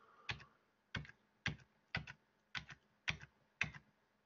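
Quiet clicks of a computer key pressed seven times in a row, about two a second, paging through presentation slides.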